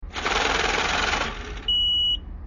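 An electronic sound effect: a burst of loud static-like hiss with a low rumble for about a second and a half, then a steady high-pitched beep.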